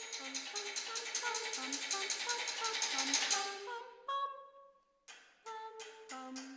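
Contemporary chamber music for marimba and voices: a fast, dense tremolo of clicking strikes on the marimba over held, changing pitched notes, swelling to a peak about three seconds in. It then fades to a single held note and a moment of near silence before the strikes start again near the end.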